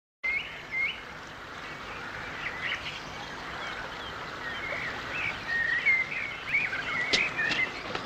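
Small songbirds chirping and twittering in quick short phrases over a steady hiss, with a sharp click near the end.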